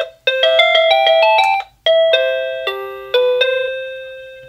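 SadoTech RingPoint driveway-alert receiver playing its electronic chime tones as the ringtones are cycled through: one tune is cut off at once, a quick run of rising notes stops abruptly, then a new tune starts just before the 2-second mark and rings out and fades.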